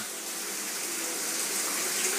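Steady hiss of background noise, with no clear events.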